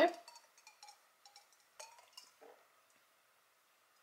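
Faint, sparse sips and small glass clinks from drinking an iced latte out of a stemless glass, a few soft ticks in the first couple of seconds and then near quiet.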